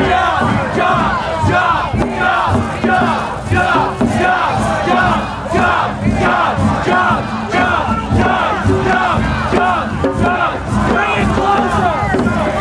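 A large crowd of protesters shouting together, many voices at once, loud and continuous, swelling and dipping every second or so.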